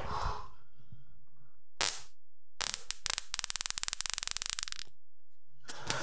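A person breaking wind: a short puff about two seconds in, then a longer fluttering fart with rapid pulses lasting about two seconds.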